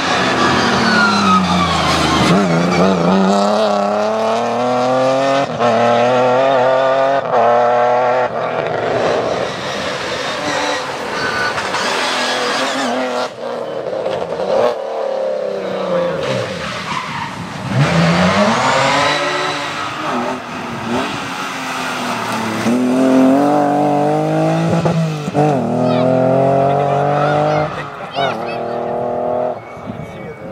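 Rally car engines at full throttle. In the first few seconds the pitch climbs and drops back again and again as the car shifts up through the gears. Midway a car sweeps past, and near the end another accelerates hard through several upshifts.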